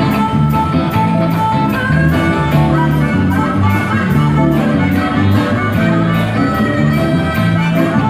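Live band music: drums keeping a steady beat under electric bass, guitar and keyboard, with a harmonica played cupped against the vocal microphone carrying the sustained lead notes.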